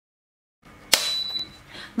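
A single sharp click about a second in, followed by a brief high, steady ringing tone, as the soldering station is handled.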